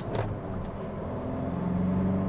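Kia Stonic's CRDi turbodiesel engine pulling under acceleration, heard inside the cabin as a steady low hum that grows a little louder towards the end.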